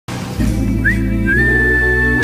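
Opening of a pop song: a whistled melody over a steady bass line, a short rising whistle followed by one long held high whistled note.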